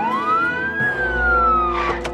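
Police car siren giving a single wail that rises quickly for just under a second, then slowly falls.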